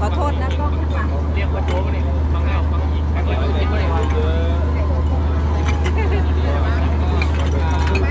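Several people talking close by over a steady, unbroken low machine hum.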